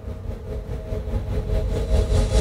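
Low steady rumble with a steady hum above it, slowly growing louder.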